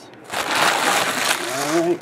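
Foil trading-card packs crinkling and rustling as they are handled, in a loud burst of about a second, followed near the end by a man's voice.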